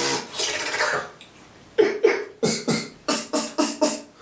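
Mouth beatboxing imitating a drum kit. It opens with a drawn-out hissing, crash-like sound for about a second, and after a short pause a quick run of punchy drum hits follows, about four a second.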